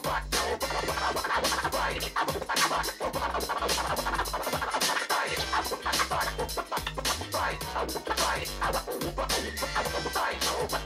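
DJ turntable scratching over a backing beat: rapid, choppy cuts of a record worked back and forth by hand, with a steady bass line underneath.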